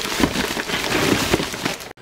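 Plastic shopping bag rustling and crinkling close to the microphone, a dense irregular crackle throughout.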